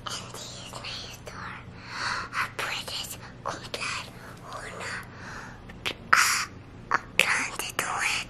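A young girl whispering into her mother's ear, close to the microphone: breathy phrases with a few sharp clicks.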